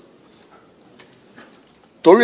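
A pause between spoken sentences: faint room noise with two soft, short clicks, one about a second in and a weaker one shortly after.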